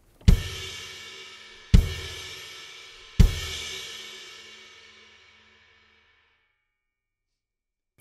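Sabian Anthology ride cymbal crashed on its edge with the shoulder of a drumstick, three loud strikes about a second and a half apart, each with a low thump under it. The wash after the last strike rings on and fades away over about three seconds.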